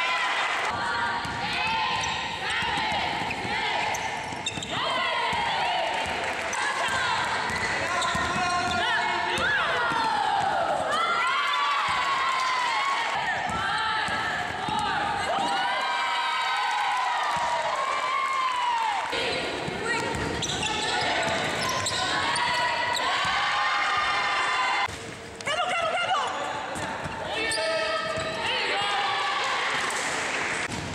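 Live basketball game sounds echoing in a large hall: the ball bouncing on the court amid players' voices calling out.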